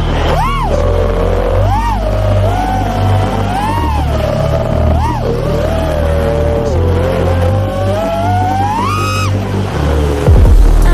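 5-inch FPV quadcopter's brushless motors whining, the pitch swooping up and down several times as the throttle is punched and eased, then climbing steeply near the end. Electronic music with a heavy bass line plays underneath.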